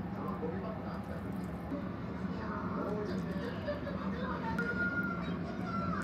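Quiet kitchen room tone with a steady low hum and a faint voice in the background, and a short faint high tone about four and a half seconds in.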